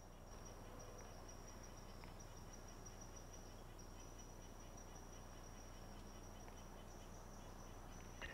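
Insects trilling: a faint, steady high-pitched chorus with a low hum underneath.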